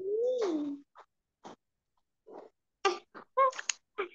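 A voice over a video call: one drawn-out vocal sound that rises and then falls in pitch, followed by short, clipped snippets cut apart by silent gaps.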